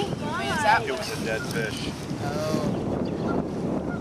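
A young child's high-pitched excited voice, calling out in the first half and briefly again past the middle, over steady wind noise on the microphone.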